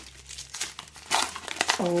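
Brown kraft paper crinkling as it is unwrapped by hand from around a clear plastic tube, in irregular crackles with the loudest about halfway through.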